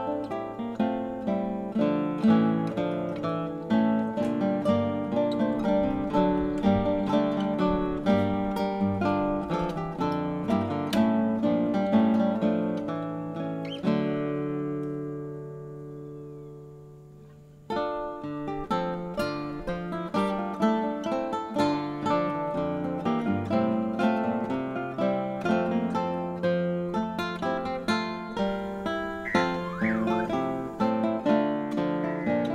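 Acoustic guitar music, plucked notes played continuously. About halfway through, one chord is left ringing and fades away for a few seconds, then the plucking starts again.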